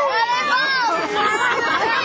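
A crowd of people talking and calling out over one another, many voices at once with no single clear speaker.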